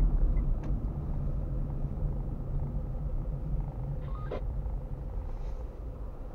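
A car's engine and road noise heard from inside the cabin: a steady low rumble that slowly eases off, with one short click about four seconds in.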